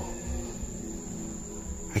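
Soft background score of sustained keyboard-like chords over a slow, soft low pulse, with a steady thin high-pitched tone running underneath.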